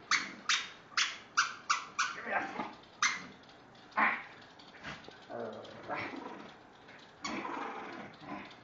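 Small dog giving short, sharp play barks, about six in quick succession, then two more a second apart, while tugging at a plush toy. She is barking to get the person to play with her.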